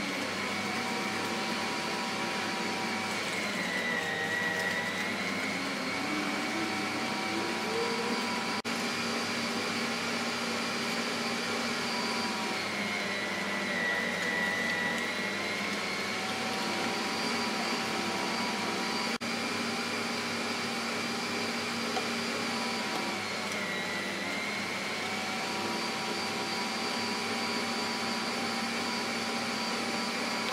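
An electric motor running steadily with a whine. The pitch sags briefly about every ten seconds, as if the motor were being loaded.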